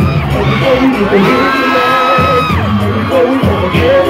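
Live R&B band music playing loud through a theatre sound system, with a bass pulse and held vocal lines, while the audience whoops and screams.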